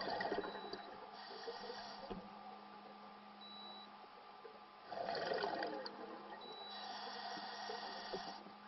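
Scuba diver breathing through a regulator: a gurgling rush of exhaled bubbles, then the hiss of an inhale, the cycle coming twice. A faint steady hum runs underneath.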